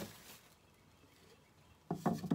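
Quiet room tone, with a short burst of voice near the end.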